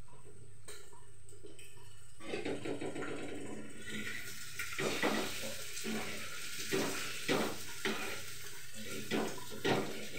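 A metal spatula scraping and knocking against a frying pan on a gas stove, in a series of sharp strokes through the second half, over a steady frying hiss that builds from about two seconds in.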